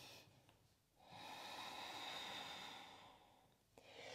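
A person's long, soft breath, lasting about two seconds from about a second in; otherwise near silence.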